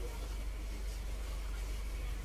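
Steady low hum under a faint even hiss: room background with no distinct sound.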